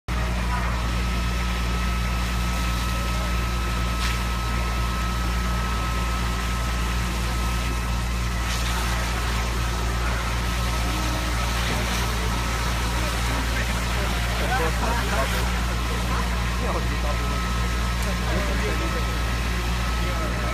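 Fire engine's engine running steadily at idle, a constant low drone with a thin steady whine above it.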